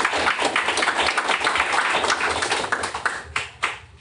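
A small audience applauding with dense, overlapping claps, dying away just before the end.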